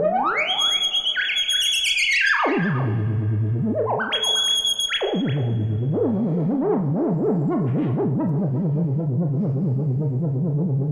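Moog Werkstatt synthesizer played theremin-style by hand over a Koma Kommander proximity sensor. Its tone swoops up from low to a high held whistle and back down, twice. From about six seconds in it settles into a low drone whose filter wobbles about two to three times a second under the LFO, with delay echoes trailing the notes.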